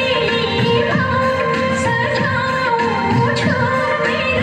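Recorded Nepali folk song playing for the dance: a singing voice with gliding melody over steady instrumental accompaniment.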